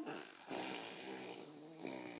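A baby blowing a long buzzing raspberry through his lips, starting about half a second in, after a brief voice sound at the very start.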